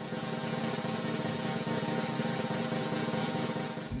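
A steady snare drum roll held for about four seconds, the lead-in to the national anthem at a flag raising.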